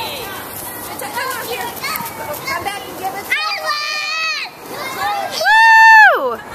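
Young children playing and calling out, with two long, high-pitched cheering shouts: one about three and a half seconds in, and a second, very loud and close one near the end that drops in pitch as it ends.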